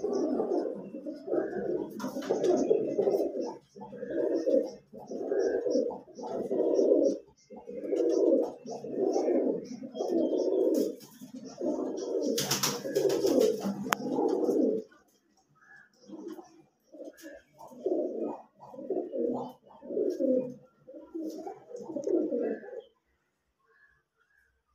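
Domestic pigeons cooing over and over, low coos coming about once a second, with a brief noisy burst about halfway through. The coos come more sparsely in the second half and stop shortly before the end.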